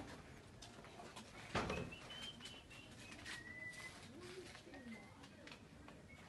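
Faint bird calls: a few thin, high whistles and one low call, with one sharp knock about one and a half seconds in.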